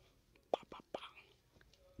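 A few faint, short mouth clicks and a brief low whisper from a man close to a microphone, about half a second to a second in. The room is otherwise quiet.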